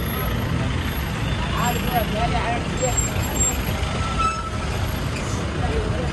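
Street traffic: a bus and other vehicles driving past close by, their engines making a steady low rumble.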